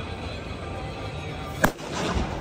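A single sharp firecracker bang about a second and a half in, the loudest sound here, with a brief trailing echo.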